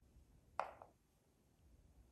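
Near silence with two faint, short clicks a little over half a second in, from buttons being pressed on a handheld electronic yarn counter.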